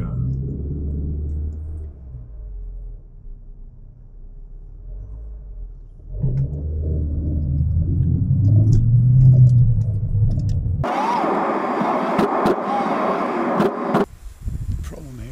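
Low engine and road rumble inside a car's cabin as it moves slowly past a herd of cattle on the road. It eases off for a few seconds, then swells again. About three seconds before the end it cuts sharply to a brighter, busier sound from a different scene.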